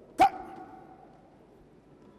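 A man's single short, loud shout just after the start, its tone trailing off over the next second.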